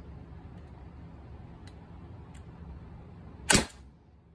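Umarex HDR68 .68-calibre less-lethal marker, converted to high-pressure air with a 17-inch barrel, firing one shot near the end: a single sharp pneumatic pop lasting a fraction of a second. Two faint clicks come before it.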